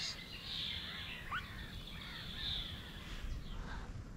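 Faint outdoor background of distant wild birds calling, with a few thin chirps and one short rising call about a second in, over a steady high hiss.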